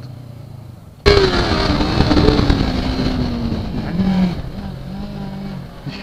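Yamaha R3's 321 cc two-cylinder engine running while riding, with wind rush. About a second in it suddenly gets much louder, then its pitch falls steadily as the revs drop.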